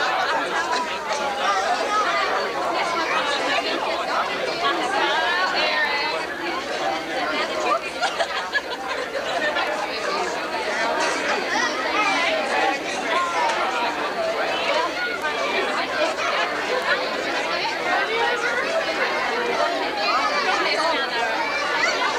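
Crowd chatter: many people talking at once in overlapping conversations, holding steady throughout.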